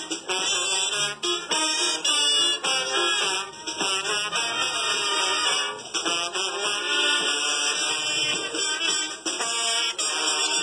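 Brass marching band with trombones and saxophones playing a dobrado, a Brazilian military-style march, on parade. The sound comes through an old VHS camcorder recording.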